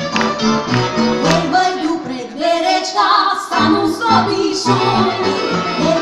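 Slovak cimbalom band playing a folk song live: fiddle over a pulsing double-bass line, with women singing from about two seconds in.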